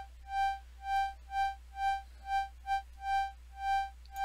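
Synthesized organ from Bitwig Studio's Organ device, holding one high note. A sine LFO on its center tone wheel makes the note swell and fade about twice a second.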